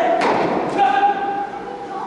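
Tennis balls struck by rackets in a rally, echoing in a large indoor hall: a sharp hit just after the start and a fainter one about half a second later. A player's drawn-out call sounds over them.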